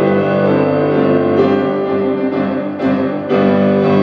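Yamaha C5 grand piano playing held chords of a hymn tune, with a brief break a little before three seconds in and a new chord struck just after it.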